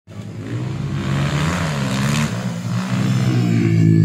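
Honda CRF150 dirt bike's four-stroke single-cylinder engine revving up and down through a corner, growing louder as it approaches.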